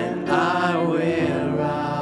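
A worship song sung with instrumental accompaniment, held notes flowing between phrases; a new sung phrase comes in about a third of a second in.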